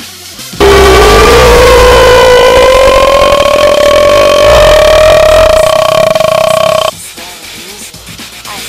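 A man's long, deliberately overloaded yell into an earbud microphone, held for about six seconds with its pitch slowly rising, the recording clipping into harsh distortion. It starts and cuts off abruptly.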